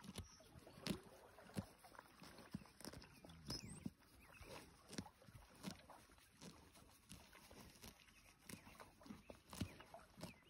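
Yearling colt grazing close by: quiet, irregular crunches of grass being torn and chewed, about one or two a second.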